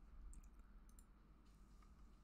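Near silence: faint room tone with a few faint computer mouse clicks in the first second.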